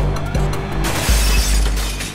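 Car crash: a heavy impact with a low boom and glass shattering, starting about a second in, over a film score.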